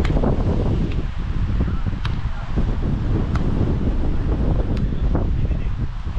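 Wind buffeting the microphone: a loud, steady low rumble. A few faint sharp taps come through it, the last near the end, fitting a volleyball being struck.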